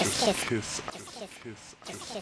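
Electronic music built from a sampled spoken voice chopped into short fragments, most likely the phrase 'just kiss', replayed in a stuttering loop of several quick bursts, with a quieter stretch near the end.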